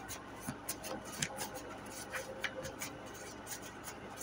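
Tarot cards being shuffled by hand: a soft, irregular run of papery flicks and rustles as the cards slide against each other.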